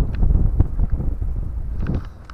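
Wind buffeting the microphone as a low, uneven rumble, with a few faint clicks.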